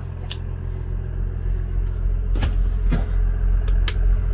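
Cummins 6.7-litre inline-six turbodiesel running steadily at idle, heard from inside the car's cabin, with a few light clicks and knocks over it.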